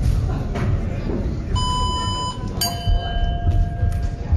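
A short electronic beep, then a single strike of the ring bell that rings out and fades over about a second: the signal to start the round.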